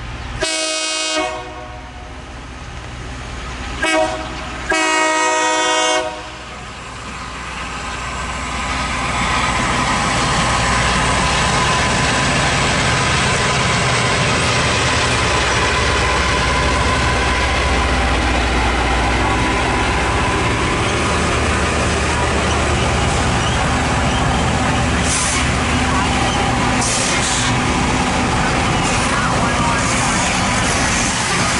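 Loram rail grinder train's air horn sounds three blasts, long, short and long. The train then passes with its grinding stones working the rail, a loud steady grinding noise that builds over a few seconds and holds, over the rumble of its engines.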